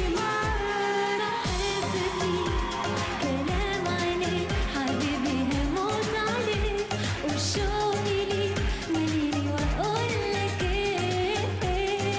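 A woman singing a pop song live over a backing band, with a steady kick-drum beat about twice a second and a bass line.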